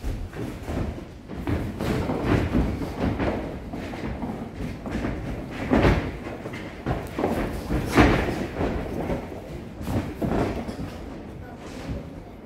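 Boxing gloves landing in a sparring exchange: an irregular series of punch thuds, the loudest about six and eight seconds in.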